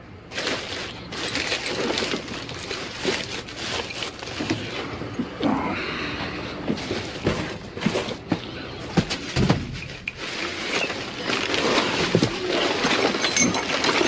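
Plastic trash bags rustling and crinkling as gloved hands dig through them, with frequent sharp clicks and knocks of items being shifted.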